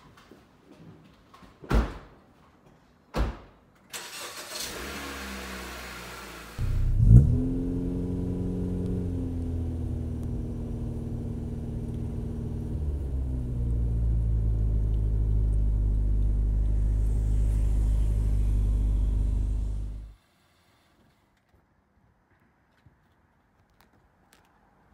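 Two car doors slam shut, then a Honda Civic coupe's engine starts with a quick rev flare and settles into steady running, a little louder from about halfway. The engine sound cuts off suddenly a few seconds before the end.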